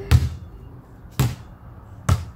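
Inflatable beach ball bouncing on the concrete floor of an empty swimming pool: two dull thuds about a second apart.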